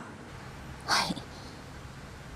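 A single short, breathy spoken "hai" ("yes") about a second in, falling in pitch, over a low hum.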